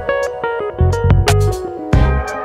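Background music: a guitar-led track with bass and a steady beat.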